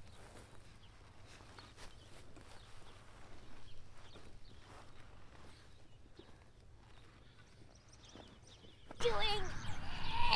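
Faint scraping of a hand soil auger being twisted into grassy ground, with scattered soft scrapes and knocks. About nine seconds in, children's voices come in much louder.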